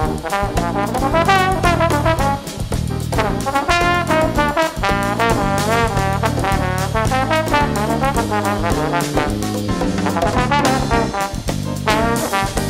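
Instrumental break in a jazz song: a brass solo with wavering, vibrato-laden notes over bass and drums.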